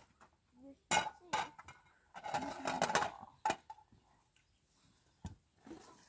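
Spoons and plates clinking and knocking: several sharp separate strikes spread across a few seconds as children eat.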